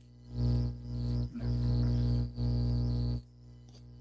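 A steady low buzz with many overtones at a fixed pitch. It comes in about a third of a second in, drops out briefly twice, and cuts off about three seconds in.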